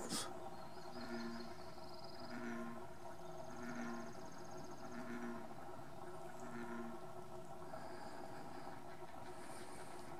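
A series of five short, low animal calls, evenly spaced about a second and a quarter apart, with thin high bird trills now and then above them.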